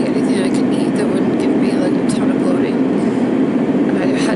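A steady, loud low hum runs through, with a woman's voice faintly heard over it.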